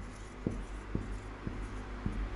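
Marker writing on a whiteboard: short, faint strokes and taps, about two a second, as digits are drawn.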